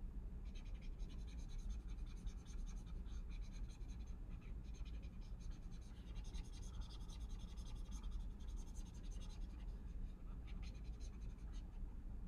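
A stylus scratching and tapping on a pen tablet or touchscreen in irregular short strokes while writing and erasing, faint, over a steady low hum.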